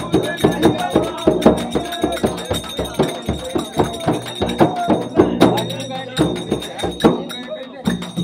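Men singing a Holi dhamal song to a large frame drum (daf) beaten with a stick, which keeps a steady rhythm of about three strokes a second.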